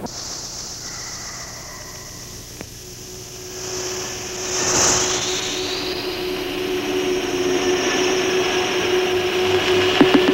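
Steady running noise of a moving vehicle, growing louder about four seconds in, with a steady hum tone joining around the same time.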